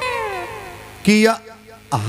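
A man's voice drawing out a sung note that glides steadily downward, then a short loud syllable about a second in, as he chants a verse into a microphone.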